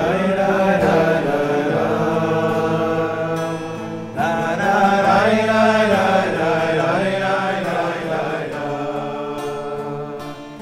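A group of men singing a niggun together in unison, a slow, sustained chant led by one voice, with acoustic guitar accompaniment. The singing drops briefly between phrases about four seconds in, then swells again.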